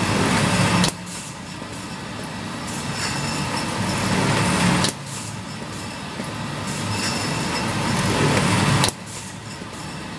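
Baumer wrap-around case packer running: a dense mechanical clatter of chains, conveyors and folding gear. It builds over about four seconds and then drops off abruptly, three times in a regular cycle.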